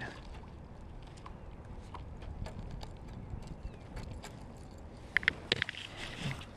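Low, steady rumble of water and wind around a fishing kayak, with faint scattered ticks and a few sharp clicks about five seconds in as the angler handles his rod and lure.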